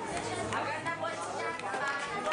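Chatter of many overlapping voices, with a few faint clicks.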